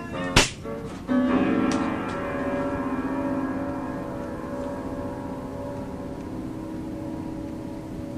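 A single sharp bang just under half a second in, then a held keyboard chord that rings on and slowly fades.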